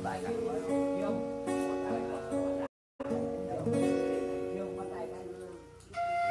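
Acoustic guitar playing chords, the sound cutting out completely for a moment about three seconds in and fading lower near the end.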